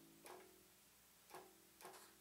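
Faint single plucked notes on a violin-shaped electric bass, three short notes spaced about a second and then half a second apart, while a tuning peg is turned: the bass being tuned.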